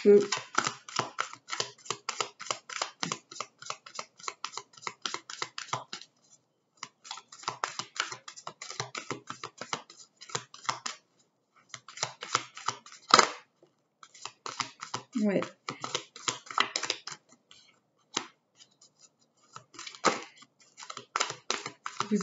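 A deck of oracle cards being shuffled by hand: runs of rapid papery clicking in several bursts with short pauses between, and one sharper snap about 13 seconds in.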